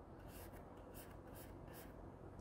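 Faint brushing of a paintbrush laying oil paint onto a painting panel: about six short strokes in quick succession, over a low steady hum.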